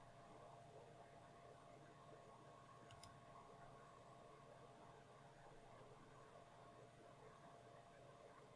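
Near silence: faint room tone with a steady faint hum and a single faint click about three seconds in.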